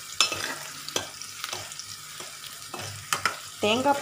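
Chopped onions sizzling as they fry in oil in a pan, stirred with a steel spoon that taps and scrapes against the pan several times.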